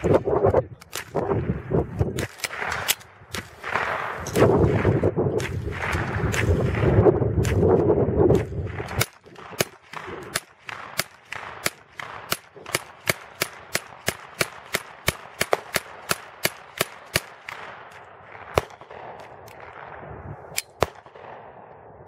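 Semi-automatic 9mm M31 Suomi carbine fired in quick single shots. For the first nine seconds the shots sound over a heavy rumble, then come in an even string of about three a second, followed by a few slower single shots.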